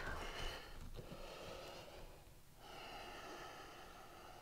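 Faint human breathing: one breath fading out over the first two seconds, a short lull, then a second breath from just past the middle.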